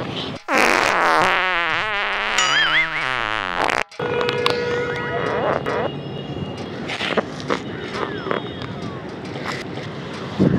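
Dubbed-in cartoon comedy sound effects: a loud wobbling tone that slides downward for about three seconds and cuts off abruptly, followed by a held tone with short whistling glides and clicks.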